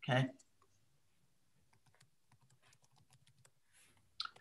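Faint typing on a computer keyboard: a quick run of keystrokes lasting about three seconds.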